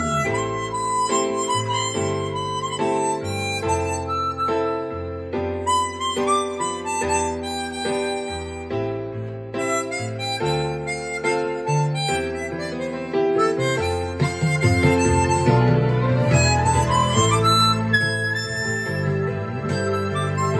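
Hohner 280-C Chromonica chromatic harmonica playing a slow melody over chordal accompaniment, swelling louder in the second half.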